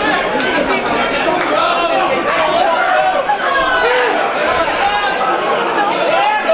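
Ringside crowd chattering and shouting, many voices at once, with a few sharp knocks scattered through it.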